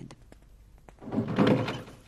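Door sound effect: one muffled thunk, lasting under a second, about a second in, after a few faint taps.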